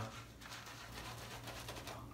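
Faint swishing of a synthetic-knot shaving brush working shave cream into lather on a stubbled face, in quick repeated strokes, over a low steady hum.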